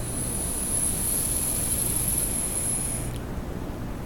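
Electronic cigarette tank being drawn on: a steady high hiss from the firing coil and air pulling through the airflow, cutting off about three seconds in.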